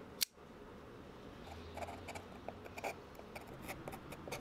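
A single sharp click about a quarter second in, then the tip of a folding knife scraping and picking in short, irregular scratches at the rough edges of a spray-painted stencil.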